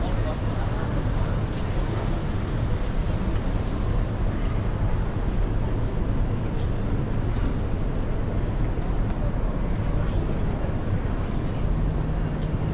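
Busy city street ambience: a steady low rumble of traffic with the indistinct chatter of passers-by.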